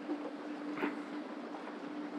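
A steady, faint mechanical hum over a low background hiss, with a brief soft sound just under a second in.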